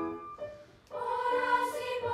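A children's choir singing. A sung phrase fades away, there is a brief near-silent pause, and about a second in the choir comes back in on a new held chord.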